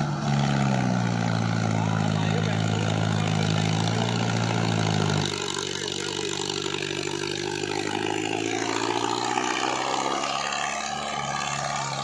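Mahindra Arjun tractor's diesel engine held at high revs under heavy load as it pulls a loaded trolley up out of a sand pit. The revs rise at the start and hold steady, then fall to a lower running note about five seconds in.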